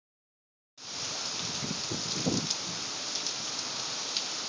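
Downpour of heavy rain falling steadily onto the street and surfaces below, with a few sharper drip taps; it starts abruptly just under a second in.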